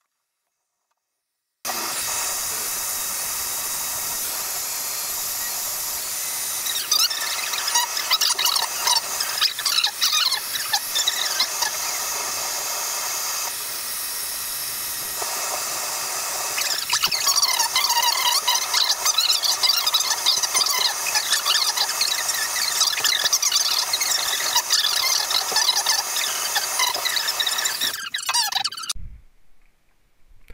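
Heat gun running, blowing hot air onto a Delta shower mixing valve's brass body to expand the metal and loosen a cartridge stuck by calcium build-up. A steady rush of air with a wavering high-pitched whistle over it, louder in stretches; it starts abruptly about two seconds in and stops shortly before the end.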